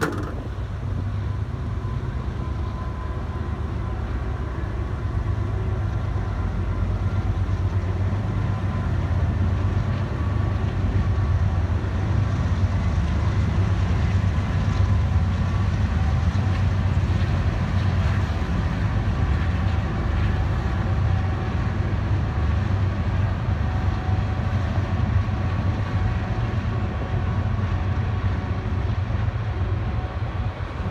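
Freight train hauled by diesel locomotives passing on the track: a loud, steady low rumble of engines and wheels on rails, growing a little louder over the first several seconds and then holding.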